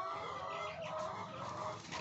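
A flock of laying hens clucking steadily and low in the background, many overlapping calls at once.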